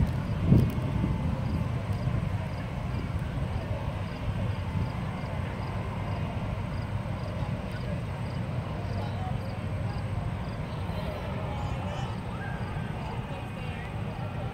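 Outdoor fairground ambience: a steady low rumble throughout, with faint distant voices. There is a brief louder sound about half a second in.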